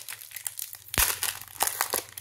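Foil Pokémon booster pack wrapper crinkling as it is handled and opened, with one dull thump about a second in.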